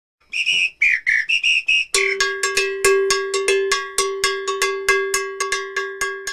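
Intro jingle: a short whistled tune of a few high notes, then a fast, even run of ringing bell-like strikes, about six a second, over a held low note that fades away.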